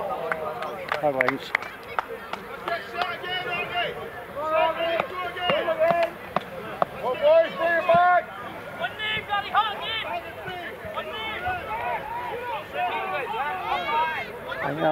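Several people's voices shouting and calling out at once, raised and high-pitched, with no clear words. There are a few sharp clicks in the first couple of seconds.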